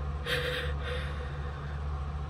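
A woman's sharp breath in, lasting about half a second, as she collects herself after laughing, over a steady low hum.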